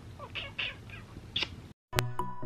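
A few soft, short kisses on a Great Dane's nose, quiet close-up smacks spread through the first second and a half, then the sound cuts off suddenly.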